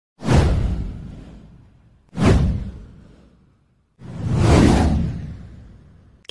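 Three whoosh sound effects for an animated title intro. The first two start sharply, the first just after the start and the second about two seconds in. The third swells up more gradually about four seconds in. Each one fades away over a second or so.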